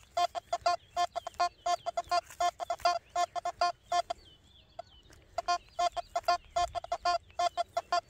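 Quest Q60 metal detector sounding a rapid run of short, same-pitched beeps, about five a second, as the coil sweeps back and forth. The beeps pause briefly near the middle and then resume. It is the detector's target tone in 3-tone mode, signalling a 20-cent coin buried 25 cm deep, read as target ID around 68 to 71.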